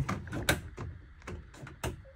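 Several irregular plastic clicks from the steering-column stalk being worked to switch the high beams, the loudest about half a second in and near the end.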